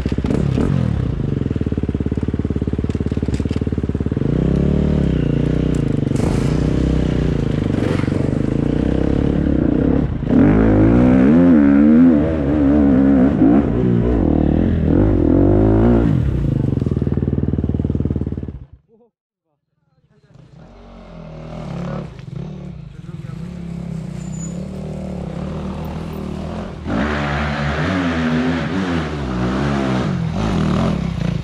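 Enduro dirt bike engines running and revving up and down as the bikes ride a muddy forest trail. The sound cuts out for about a second just past the middle, then the engine sound builds again.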